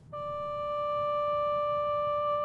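Background music: a single sustained electronic keyboard note, starting just after the beginning and held steady without change.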